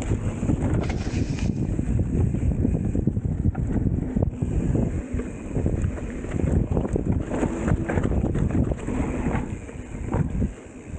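Wind buffeting the microphone: a loud, uneven low rumble that surges and dips.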